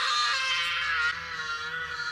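A boy's long, high-pitched scream from a film soundtrack, one note held at a steady pitch.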